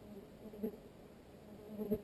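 A flying insect buzzing close past the microphone twice, the hum swelling and fading each time, loudest about half a second in and again near the end.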